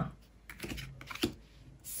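Tarot cards being handled and laid down on a table: a few light clicks and taps, scattered and irregular.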